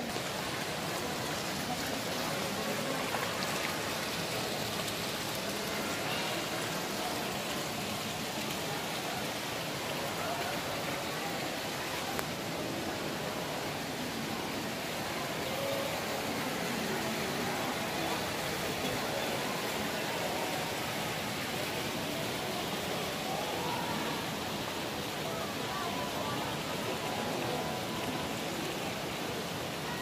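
Steady rush of running water from a fountain or water feature, with faint voices of people in the background.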